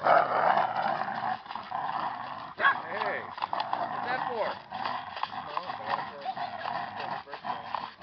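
Dogs playing tug of war over a bottle: dog vocal sounds, with a couple of short rising-and-falling whines about three and four seconds in, over scattered clicks.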